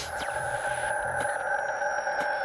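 Electronic music sting: a sustained synthesizer chord held steady, with a couple of faint clicks, at the tail of a logo-intro jingle.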